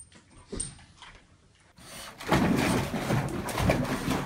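A French bulldog in a foamy bubble bath makes dog noises. The sound gets loud and busy from about two seconds in, after a quiet first half with one brief sound.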